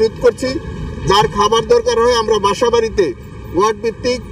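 A man speaking Bengali into reporters' microphones, in a statement to the press.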